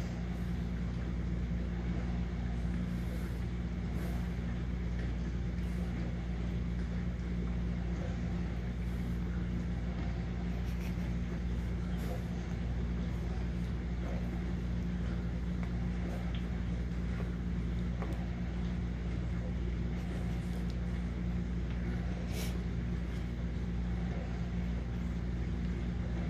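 Steady low hum, with a few faint clicks.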